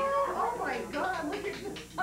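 Overlapping voices of a group of adults and children talking and calling out at once, with a long held voice note at the very start.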